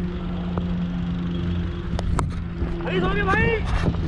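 Wind rumble on a helmet-mounted action camera's microphone, under a steady low motor hum, with a few sharp clicks and a shouted call about three seconds in.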